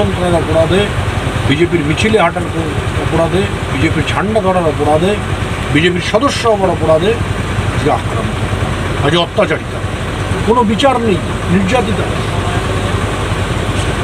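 A man talking over the steady low hum of a boat's engine running.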